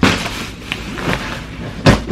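Plastic-wrapped bedding packages thrown onto a bed, landing with dull thuds: one at the start and a louder one just before the end, with lighter knocks between.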